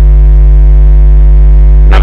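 Loud, steady electrical mains hum in the microphone and broadcast audio chain: a deep drone with a ladder of steady overtones above it. The hum does not change.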